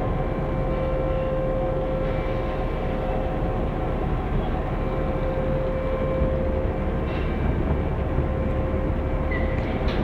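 Container crane machinery running steadily as the boom is lowered: a constant rumble with a steady whine over it, and a brief high chirp near the end.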